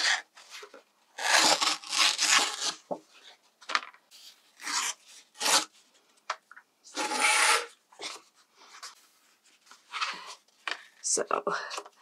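Heavy watercolour paper being torn against a steel ruler in several tearing strokes, the longest and loudest about seven seconds in, with paper rustling and sliding between them. Tearing rather than cutting leaves the paper with a rough edge.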